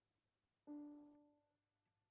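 Grand piano: one quiet note struck about two-thirds of a second in, ringing and fading away within about a second. It opens the piano introduction to a song.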